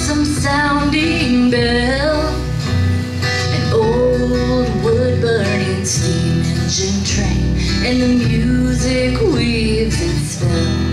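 A woman singing a slow folk-country ballad, holding long notes, accompanied by strummed acoustic guitar and upright bass.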